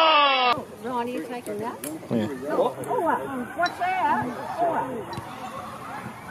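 A loud, drawn-out shout falling in pitch cuts off abruptly about half a second in; then several people's voices calling out and talking, with high, wavering cries.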